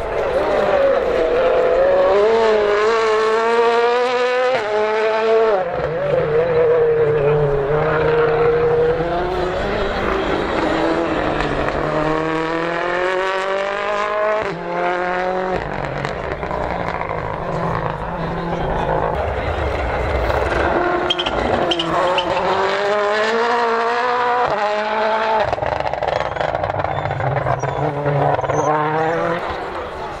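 Rally cars' engines revving hard and climbing through the gears as they pass, the pitch rising and then dropping back at each gear change, several times over.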